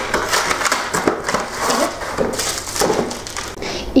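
A cardboard frozen-pizza box being pulled open and its contents handled: a dense run of rustling and tearing.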